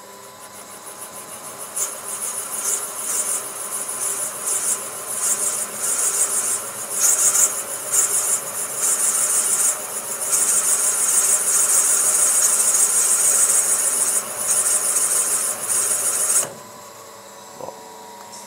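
Valve seat machine's cutter spindling out an old steel valve seat ring from a VR6 aluminium cylinder head. A high-pitched cutting noise builds over the first two seconds, runs unevenly, then steadies and stops suddenly about a second and a half before the end. Somewhere in the cut the ring gives a brief crack as it breaks loose.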